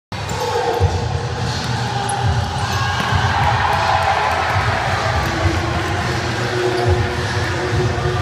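Several voices talking over one another, with a few dull low thumps, three of them spread out across the stretch.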